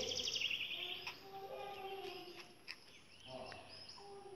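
A small bird's rapid high trill, lasting under a second at the start, followed by faint scattered chirps over quiet garden background noise.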